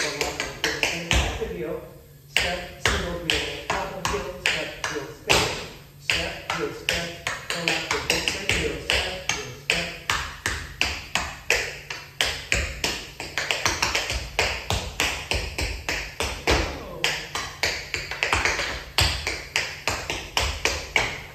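Tap shoes striking a wooden studio floor in a Shim Sham tap routine: rapid, rhythmic metal taps in phrases, with a short pause about two seconds in.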